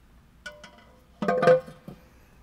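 A few metallic knocks, each with a short ring, the loudest just past the middle, as a fabricated sheet-metal intake manifold is set down on an LS V8's cylinder heads for a test fit.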